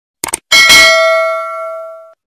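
A quick double mouse-click sound effect, then about half a second in a bright bell chime that is struck once and rings out, fading over about a second and a half: the notification-bell sound of a subscribe animation.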